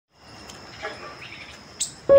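Crickets trilling steadily on one high tone, with a few short bird chirps, the sharpest one near the end.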